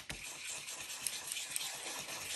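Flat stippling brush scrubbing thick gold watercolour paint around on a plastic palette sheet: a steady soft scratching of bristles.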